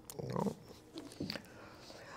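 A few faint, short breath and throat sounds from a person, with a soft tap about a second in.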